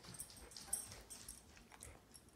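A dog whimpering faintly, high-pitched, begging for treats.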